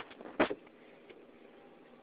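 Quiet car interior: a faint steady hiss, with one brief sharp sound about half a second in.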